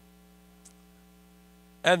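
Faint, steady electrical hum from the microphone and sound system through a pause, with one soft click about two-thirds of a second in. A man's voice starts just before the end.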